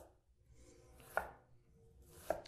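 Chef's knife dicing an onion on a wooden cutting board: faint, sparse knife strokes knocking on the board, a clear one about a second in.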